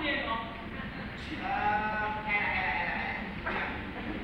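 Actors' voices on stage: speech, with one long drawn-out vocal exclamation that rises and falls in pitch about a second in.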